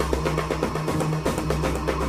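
Background instrumental music with a steady drum beat over held low bass notes.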